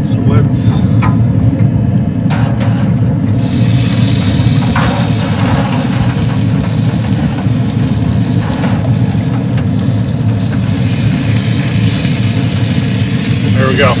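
Smoker running with its lid open: a steady low rumble, with a hiss joining about three and a half seconds in and growing brighter near the end.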